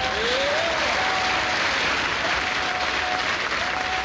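Audience applauding as the song ends, a steady wash of clapping, with a short rising sound about half a second in.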